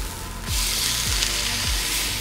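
Steak sizzling in a hot cast-iron grill pan, the hiss growing stronger about half a second in, over background music with a steady low beat.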